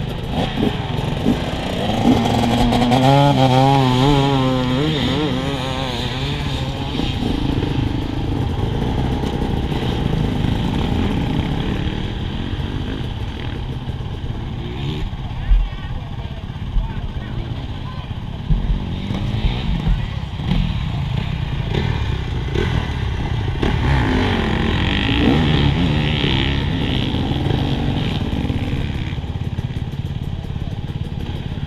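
Several two-stroke enduro motorcycle engines running at idle close by, including the rider's own Husqvarna TE 300, with an engine revving up and down a few seconds in.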